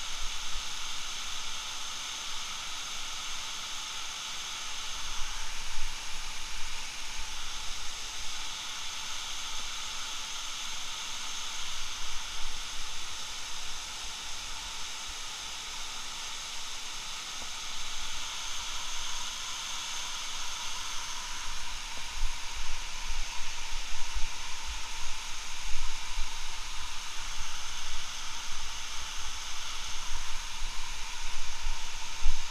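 Steady rushing hiss of a large waterfall crashing onto rock and into its pool. Irregular low buffeting on the microphone comes and goes over it, strongest near the end.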